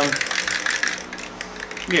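Aerosol spray can of high-build primer filler being shaken, its mixing ball rattling inside in quick clicks that are densest in the first second and then thin out.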